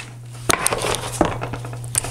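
Paper pages of a handmade journal being handled and rustling, with two light knocks about half a second and just over a second in, over a steady low hum.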